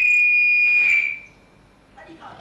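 A steady, high-pitched electronic tone, held at one pitch, that stops about a second in.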